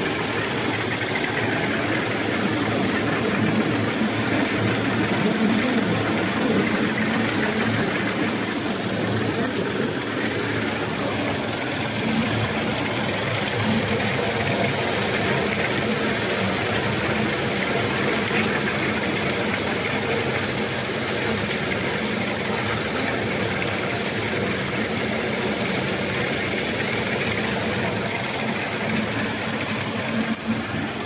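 Wet soybean peeling machine running steadily, a continuous mechanical sound with an even high hiss over it.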